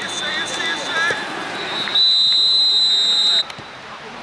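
Referee's whistle: one long, loud steady blast starting about halfway through and cutting off sharply about a second and a half later, after shouts from players.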